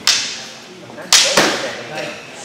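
Sharp clacks of practice swords striking during sparring: one right at the start and a louder pair about a second in, each dying away with a short echo in a large hall.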